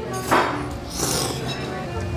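A person slurping pho rice noodles off chopsticks: a loud slurp about a third of a second in, then a hissing slurp around a second in. Background music plays underneath.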